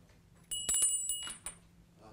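A small bell rings once about half a second in, a high ring with a few clinks that fades out within about a second. It marks the start of the speaker's timed ten minutes.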